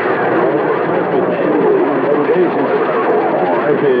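CB radio receiving long-distance skip on channel 28: several far-off stations' voices overlap, garbled and unintelligible, in a steady hiss of static through the radio's speaker.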